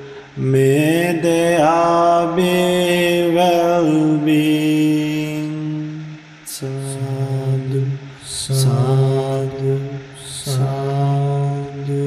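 A Buddhist monk chanting Pali blessing verses, one male voice holding long, slowly gliding notes, with short breaks for breath about six and a half and ten and a half seconds in.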